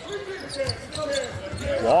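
A basketball being dribbled on a hardwood court, with voices from the arena crowd underneath.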